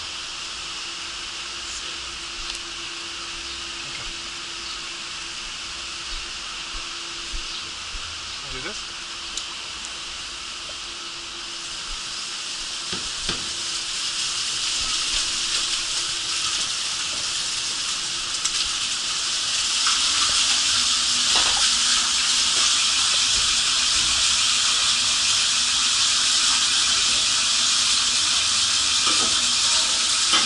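Water rushing down into a water-slide tube, a steady hiss that grows louder about halfway through and stays loud. A faint low steady hum underlies the first two-thirds.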